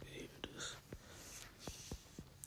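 A man whispering faintly to himself, with a few soft, sharp clicks in between, over a low steady hum.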